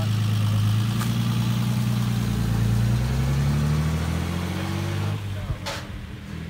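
Vintage car engine running steadily, then its note rising slowly as the car pulls away and draws off. A single sharp click near the end.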